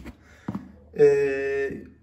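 A man's drawn-out hesitation sound, 'eh', in a pause of speech, preceded by a single short click about half a second in.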